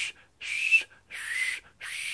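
Breathy "shh, shh" blasts of air forced over the tongue and teeth, about three in quick succession, each a hiss with only a faint whistle tone in it: a no-finger whistle attempt that fails to sound properly.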